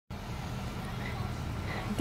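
Low, steady background rumble outdoors, with no distinct events.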